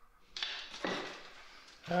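Pole sander with a sanding screen rubbing over a joint-compound skim coat on a plaster corner: two strokes, the first about a third of a second in and the second about a second in, each fading out.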